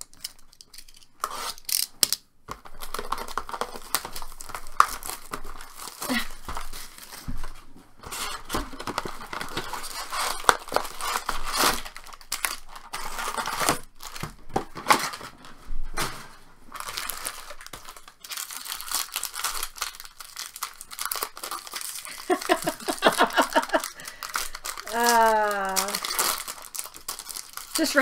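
Plastic wrapping and foil trading-card packs crinkling and tearing as a sealed hobby box is opened and its packs are handled. The sound is irregular, with many sharp crackles.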